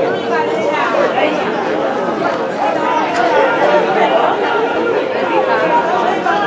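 Several people talking and calling out over one another at once: the chatter of football spectators close to the microphone.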